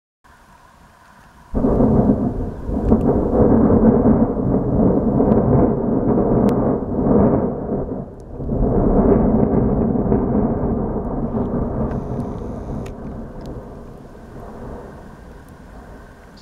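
Fuego volcano's explosive ash eruption: a thunderlike rumble starts suddenly about one and a half seconds in, swells again about halfway through, and slowly fades.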